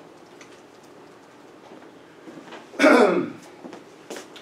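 Quiet room tone, then a man clears his throat once, about three seconds in, a short loud sound that drops in pitch.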